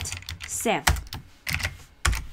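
Computer keyboard typing: a run of separate key clicks as a short line of code is typed.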